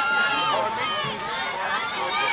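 Spectators in the stands talking and calling out over one another, many voices overlapping into a steady crowd chatter.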